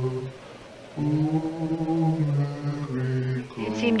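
Low men's voices chanting a slow, mournful melody in long held notes: one phrase ends just after the start, then after a short break a long held phrase follows until near the end. A woman's voice starts speaking at the very end.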